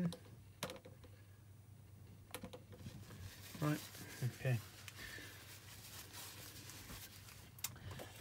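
A cloth rubbed over a sheet of card freshly coated with glue stick: a faint scuffing hiss, with a couple of light knocks before it.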